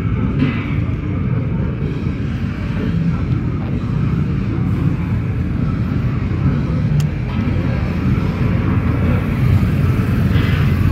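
Steady low rumble of city street traffic, with faint voices and a single sharp click about seven seconds in; a motorcycle is passing close by at the very end.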